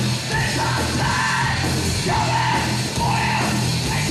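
Heavy metal band playing live: loud, dense distorted guitar, bass and drums, with a vocalist shouting into the microphone.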